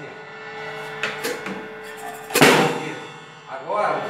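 Separate strokes on an acoustic drum kit: a lighter hit about a second in, then a loud cymbal crash a little past halfway that rings on.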